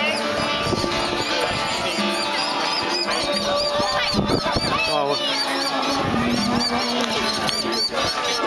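Birds calling over and over in a quick run of short, high, arched notes, agitated, over crowd chatter.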